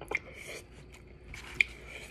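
A few faint clicks and soft noises in a quiet room, with one sharper click about one and a half seconds in.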